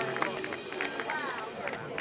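Faint, indistinct voices of people talking, with a few light taps scattered through.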